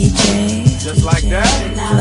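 Hip-hop music: a rapped vocal over a beat with a deep, steady bass line and regular drum hits.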